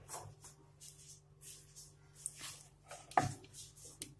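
Faint handling noises at a stove: a paratha laid on a dry iron tawa and a steel ghee tin picked up, with one louder short knock about three seconds in.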